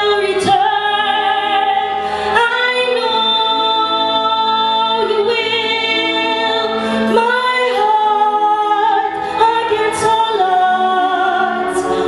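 A female voice singing slow, long-held notes with vibrato, accompanied by a concert wind band playing sustained chords.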